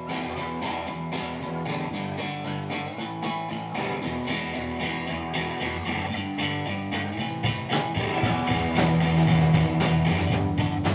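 Live rock band opening a song, led by electric guitar with drums. About three-quarters of the way in a deeper low end fills in and the playing grows louder.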